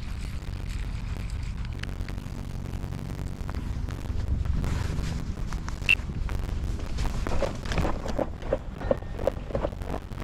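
Wind rumbling steadily on the microphone, with a sharp click about six seconds in and a run of short, light knocks in the last few seconds.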